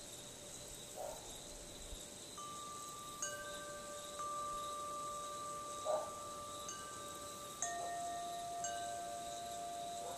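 Metal tube wind chime ringing in the breeze: a few tubes are struck one after another from a couple of seconds in, each ringing on in long overlapping tones. A short sound about six seconds in is briefly louder than the chimes.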